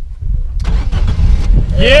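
A Fiat Panda's engine starting about half a second in and then running with a loud, low rumble, followed near the end by a shout of "Yeah!" at the car starting.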